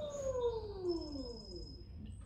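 Electric pottery wheel motor whine falling steadily in pitch over about a second and a half as the wheel slows down during trimming.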